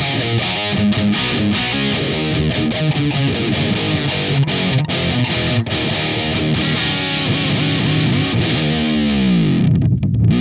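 Distorted electric guitar riff played through a tube amp head running on 117 volts, turned down from the 121-volt wall supply by a voltage controller; the player hears it as tighter, with more bark and clarity. Near the end a note dives steadily down in pitch.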